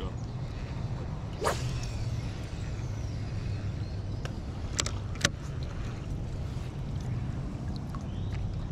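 A baitcasting rod and reel being handled over a steady low wind rumble. There is a single swish about one and a half seconds in, and two sharp clicks a little after the middle.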